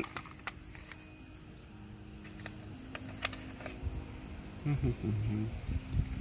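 Small screwdriver driving screws into a plastic antenna housing: a few light clicks and handling rumble. A steady high insect trill runs behind it, and a short laugh comes near the end.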